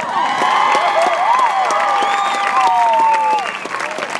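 Stadium crowd clapping and cheering, with several voices calling out in rising and falling shouts over the applause. It eases off near the end.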